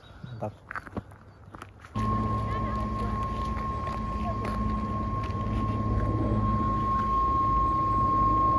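Yellow PostBus idling at a stop: a steady diesel engine rumble with a constant high whine. It starts abruptly about two seconds in and grows slightly louder toward the end.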